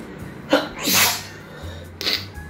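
A man sneezing once: a sharp catch about half a second in, then the loud burst of the sneeze just after.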